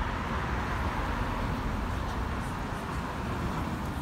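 Steady road traffic noise from cars driving along a city street, a continuous hiss of tyres and engines with no single standout event.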